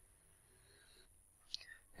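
Near silence: room tone, with a faint brief mouth sound near the end just before speech resumes.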